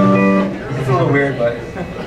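Amplified electric guitar: a held note rings out, then the notes bend and slide, with voices talking underneath.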